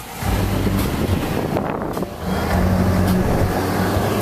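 Car running at highway speed, heard from inside the cabin: a steady low engine drone with road and wind noise.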